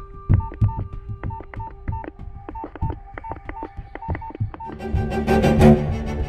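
Mobile phone keypad being pressed in quick succession, each key press a click with a short beep, about three a second, over soft background music. The music swells up near the end as the key presses stop.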